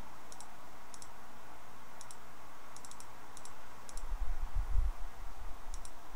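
Computer mouse clicks, each a quick double tick of press and release, coming in small irregular groups as values are keyed into an on-screen calculator emulator. A low rumble about four to five seconds in is the loudest sound.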